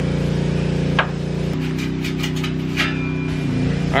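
A sharp knock about a second in, then a run of metallic clicks and knocks, as the old exhaust tip is worked loose by hand from the pickup's exhaust pipe. A steady low hum drones underneath.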